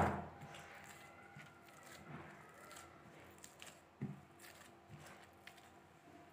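Faint, soft, irregular squishing of hands kneading oiled wheat-flour dough in a steel bowl, with one sharp knock about four seconds in.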